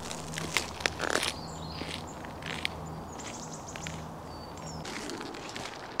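Footsteps crunching on a gravel track, mostly in the first couple of seconds, with faint birds chirping. A low steady hum runs underneath and stops about five seconds in.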